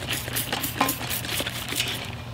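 Hand-held trigger spray bottle squeezed over and over, a quick run of short spritzes several times a second.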